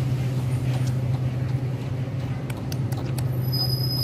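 A motor running steadily with a low, even hum. A few faint clicks come about two and a half seconds in, and a short high-pitched tone near the end.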